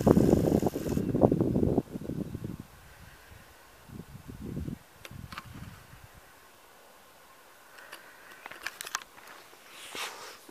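Wind buffeting the camera microphone as a loud low rumble for about the first two seconds, then a quiet open-air lull with a few faint ticks.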